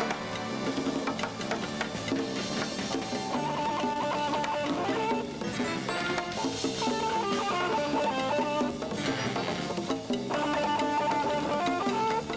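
A live band playing: an electric guitar leads with long held notes over congas and a drum kit.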